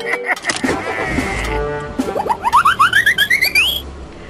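Cartoon sound effects over music: a tangle of sliding pitches in the first second or so, then a quick run of short upward sweeps, each higher than the last, from about two seconds in until near the end.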